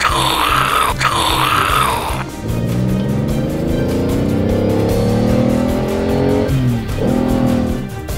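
Background music with a steady beat throughout. Over it, a wavering high cry in the first two seconds gives way to a car-engine sound effect that climbs steadily in pitch for about four seconds, drops near the end, then runs steady.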